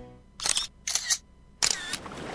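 Camera shutter sound effect: three short shutter clicks, about half a second to three quarters of a second apart.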